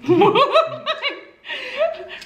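Two people laughing together: a run of quick laughs through the first second and a half, a short break, then more laughter.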